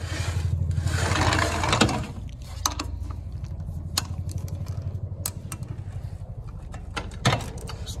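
A ratchet wrench loosening the reverse-threaded arbor nut on a benchtop brake lathe: a fast run of ratchet clicks and metal scraping in the first two seconds, then a few separate metal knocks, over a steady low hum.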